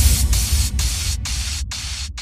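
Outro of an electronic jungle dutch breakbeat remix: the beat drops out, leaving rhythmic bursts of white-noise hiss, about two a second, over a low bass rumble, all fading steadily.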